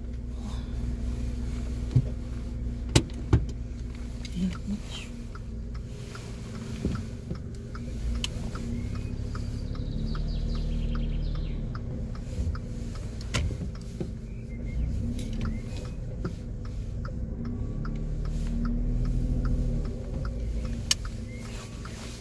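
Car engine and road noise heard from inside the cabin as the car pulls away and drives, the engine note swelling twice as it gathers speed. A few sharp clicks come in the first few seconds, and a run of faint regular ticks follows later.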